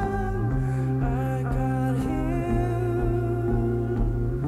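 Live band music: long held synthesizer chords over a steady bass note that steps to a new pitch about half a second in, with a singing or humming voice gliding above.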